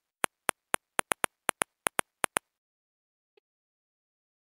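Keyboard typing sound effect: a quick, uneven run of about a dozen sharp key clicks that stops about two and a half seconds in.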